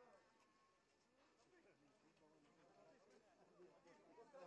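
Faint background voices of people talking, very quiet and indistinct.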